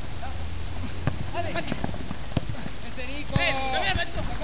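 Voices shouting across an amateur football pitch during play, with a few sharp knocks and a loud, high-pitched shout near the end, over low rumble on the microphone.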